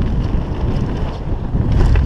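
Wind buffeting a helmet-mounted camera's microphone on a fast mountain-bike descent over a dirt trail, a steady low rumble that grows loudest near the end, with scattered small clicks and rattles from the bike.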